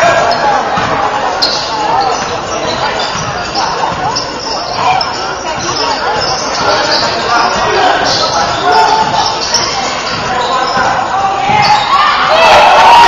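Basketball dribbled on a hardwood gym floor during live play, with players' and spectators' voices echoing in the large hall.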